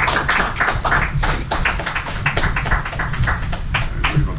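Audience applauding, a quick, irregular patter of individual hand claps.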